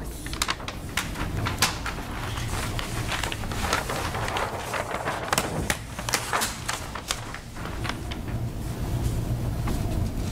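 Paper sheets being handled and leafed through close to a microphone: irregular rustles and sharp crackles over a steady low hum.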